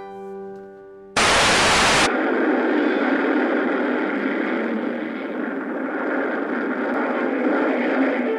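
The last plucked notes of an F-style mandolin ring out and fade. About a second in, a sudden loud burst of static-like noise lasts about a second, followed by a dense, steady wash of noise with music under it from an old monster-film clip.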